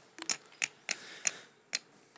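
Poker chips clicking as they are handled and set down on the table: about six short, sharp clacks at uneven intervals.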